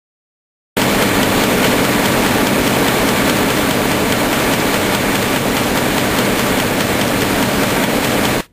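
A loud, steady rushing noise, even across low and high pitches, that starts abruptly about a second in and cuts off just as abruptly at the end.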